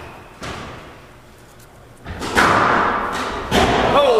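A few dull thuds and knocks in a squash court: one about half a second in, a louder, longer burst about two seconds in, and another about three and a half seconds in.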